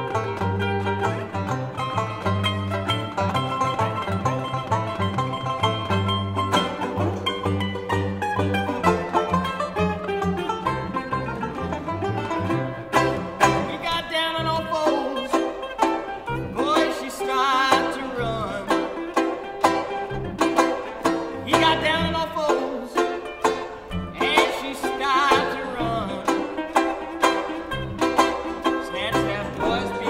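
Old-time string band instrumental: a resonator mandolin picking a quick melody with a banjo, over low bass notes that are strongest in the first twelve seconds or so.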